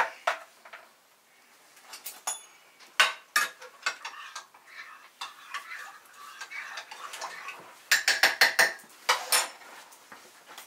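Spoon clinking against ceramic coffee mugs while coffee is made and stirred: scattered clinks and knocks, then a quick run of about half a dozen clinks near the end.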